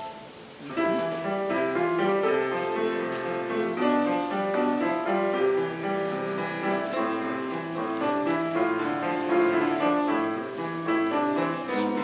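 Grand piano played solo in a classical piece: a short break in the sound, then a steady run of notes starts again under a second in and carries on.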